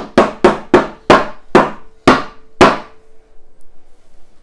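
A drinking glass full of plain flour knocked down repeatedly to tamp and settle the flour: about eight sharp knocks over nearly three seconds, slowing toward the end.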